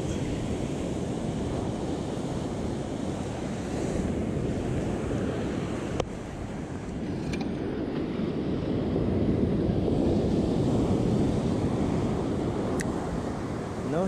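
Ocean surf breaking and washing up a sandy beach, with wind buffeting the microphone; the surf swells louder a little past halfway. A sharp click about six seconds in and another near the end.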